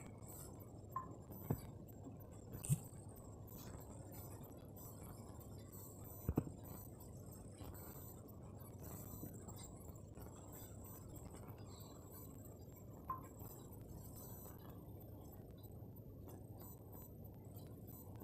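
Faint steady low background hum and hiss, with a few short, sharp clicks or taps: three in the first three seconds, a double one about six seconds in and one more about thirteen seconds in.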